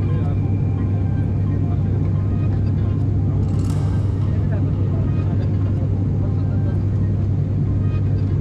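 Turboprop airliner's engine and propeller heard from inside the cabin in flight: a loud, steady, low drone that does not change, with a brief hiss about halfway through.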